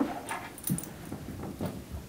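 Bed bug detection dog sniffing at an open drawer while searching for the scent, with a few faint clicks and knocks.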